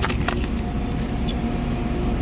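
Steady low machinery hum, with a few light clicks of metal tools being handled in a plastic drawer tray near the start and once more about a second in.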